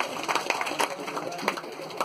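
Indistinct voices of several people talking in a hall, with a few short sharp knocks or claps.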